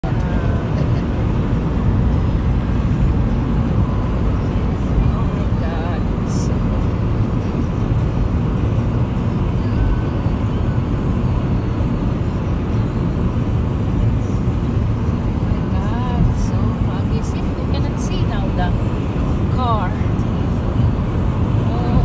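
Steady low road and engine noise of a car travelling at highway speed, heard from inside the cabin.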